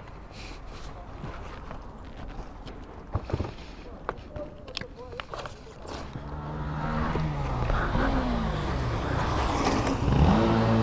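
Quiet street background with a few small clicks and knocks. About six seconds in, a passing motorcycle's engine comes up louder, its pitch slowly falling as it goes by.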